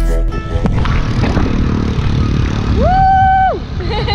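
Small motorcycle riding along a road: engine and wind noise on the microphone as the background music stops. About three seconds in, a vehicle horn beeps once, a steady tone lasting nearly a second.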